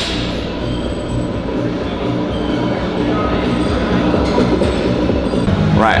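Loud, steady din of a large gym hall, with music playing over it.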